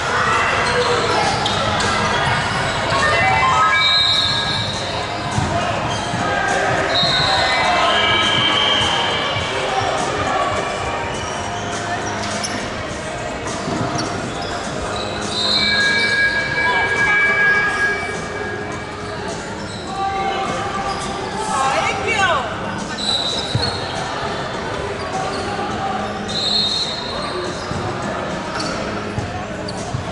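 A basketball bouncing on a hardwood court in a large indoor sports hall, with voices around it.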